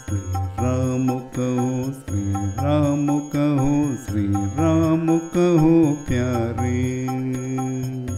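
Hindi devotional bhajan, sung: a voice holds long, wavering notes in phrases a second or two long over steady instrumental accompaniment.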